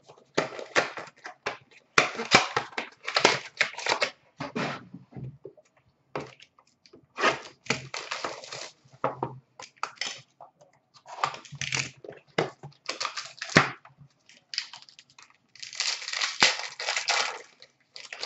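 A hockey card hobby box and its wrapping being torn open and handled: bursts of crinkling and tearing of plastic and cardboard, with short pauses between them.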